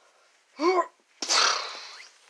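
A person sneezing: a short voiced 'ah' about half a second in, then a sharp, hissy burst that fades away.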